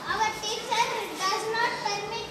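Speech only: children's high voices speaking, reading English question-and-answer sentences aloud.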